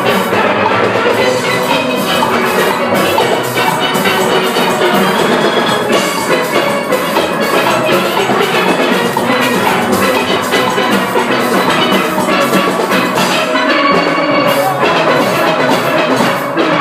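A full steel orchestra of many steel pans playing a fast tune together, with drums keeping the beat underneath.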